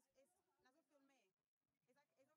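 Near silence, with only a trace of voices far too faint to hear plainly.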